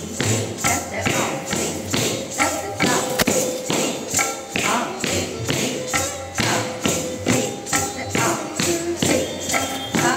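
Kathak tatkaar footwork: bare feet striking a wooden stage in an even rhythm, with ghungroo ankle bells jingling on each strike, over melodic background music. The footwork is in dugun, two foot strikes to each beat of the teentaal cycle.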